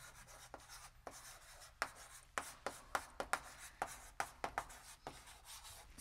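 Chalk writing on a blackboard: a faint run of short, irregular taps and scratches.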